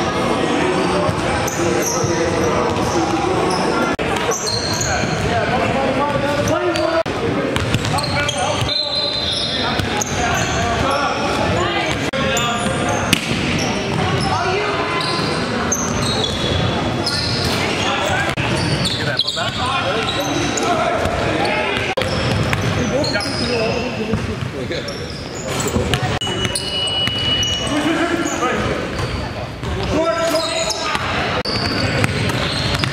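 Live basketball game sound in a large gym: a basketball bouncing on the court among players' voices calling out, all echoing in the hall. A short, steady high-pitched squeak sounds near the end.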